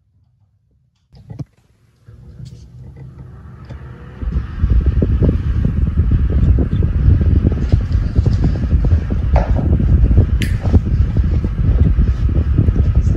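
A Faet desk fan is switched on with a click and spins up. About four seconds in its airflow reaches the microphone as a loud, low, buffeting wind noise that goes on steadily.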